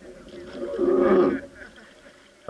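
A person's loud, drawn-out shout or call, held on one pitch for under a second about midway through, with fainter voices around it.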